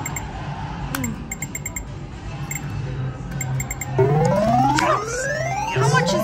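Video poker machine sounds: short electronic clicks and beeps as cards are dealt and drawn. About four seconds in, a loud electronic tone starts sweeping upward over and over as a four-of-a-kind win of four tens counts up on the credit meter; it starts again near the end.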